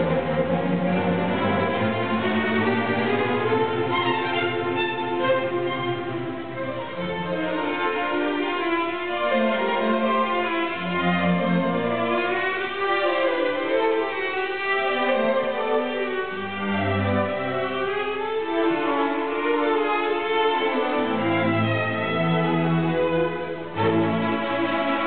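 Orchestra playing classical music, with bowed strings carrying the melody over lower cello notes: the orchestral introduction of a violin concerto, the soloist not yet playing.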